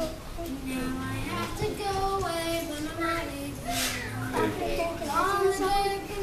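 A young boy singing a gospel song, holding long notes that slide up and down in pitch from one to the next.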